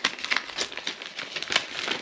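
A paper envelope crinkling and crackling in the hands as it is handled and worked open, in irregular quick crackles.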